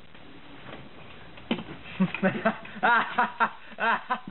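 Low room tone for about a second and a half, then a young man laughing, with bursts of voices.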